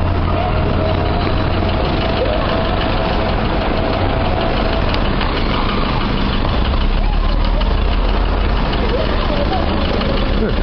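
A vehicle's engine idling with a steady low hum, under the chatter of a small crowd.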